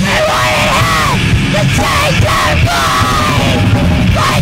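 Live heavy rock band playing: a vocalist yelling the lyrics in arching phrases over bass guitar and drums.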